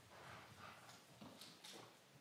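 Faint footsteps of dress shoes and soft shuffling as a few people walk and come to a halt, otherwise near silence.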